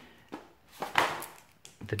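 A paper dust jacket being pulled off a hardback book on a wooden table: a few short rustles and knocks, the loudest about halfway.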